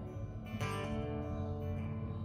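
Acoustic guitar strummed softly, its chords ringing steadily, with a fresh strum about half a second in.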